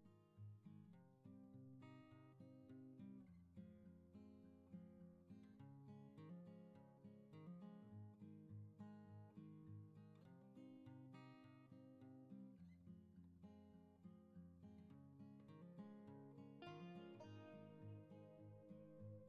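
Faint background music on acoustic guitar: a steady, unbroken run of plucked notes.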